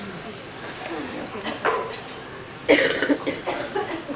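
Faint, indistinct voices of a seated gathering, then a sudden loud cough a little after halfway, followed by a few shorter vocal sounds.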